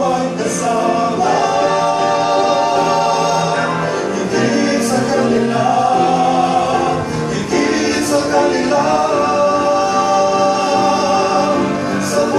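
A male vocal quartet singing a gospel song in harmony into microphones. They hold long chords, with short breaks between phrases about four seconds in and again about seven seconds in.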